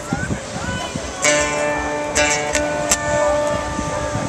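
Amplified guitar music from an outdoor stage's PA speakers, with a chord ringing out from about a second in, over the chatter of a crowd.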